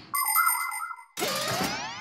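Cartoon sound effects: a bright, ringing chime with a warbling note for about a second, then a rising, sweeping glide.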